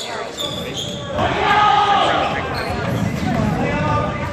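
A basketball dribbled on a hardwood gym floor during play, with indistinct calls from players in the hall that grow louder about a second in.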